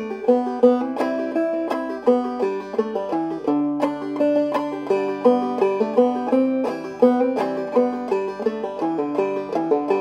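Five-string banjo played clawhammer style: a brisk, rhythmic old-time tune, picked out note by note with brushed strums and variations worked into the melody. A last chord is left ringing at the very end.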